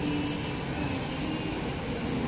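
Steady shop background noise: an even ventilation hum with no distinct event.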